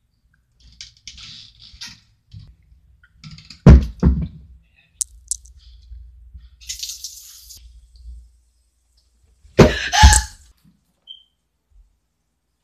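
Household knocks and thumps: a loud thump about four seconds in, a click, a brief hiss around seven seconds, then a second loud double thump about ten seconds in.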